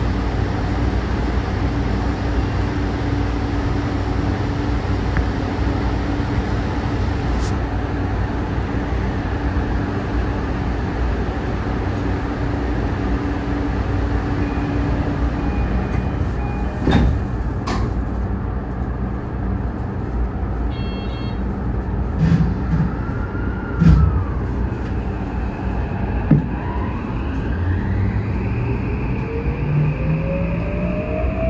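Electric commuter train running on the rails: a steady rumble with a few sharp knocks in the second half. Near the end a whine rises in pitch as the train gathers speed.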